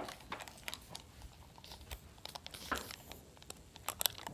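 Faint, irregular small clicks and rustles of close handling as a plastic drench gun is worked into a goat's mouth, with one slightly louder click a little before three seconds in.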